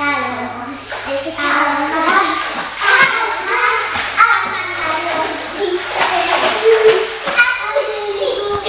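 Children's voices chattering and half-singing without clear words, with a few sharp splashes of water from swimming.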